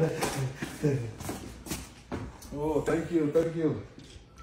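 Men talking, indistinctly, in two stretches with a short gap between.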